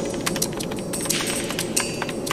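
Documentary soundtrack sound design: a sustained low drone under a run of irregular sharp clicks, several a second.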